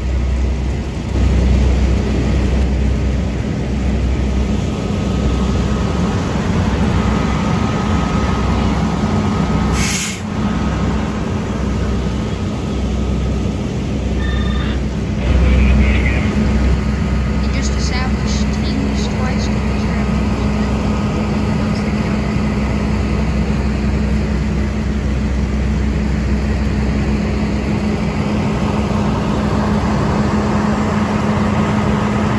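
A fire truck's engine running steadily with a constant low hum, amid voices.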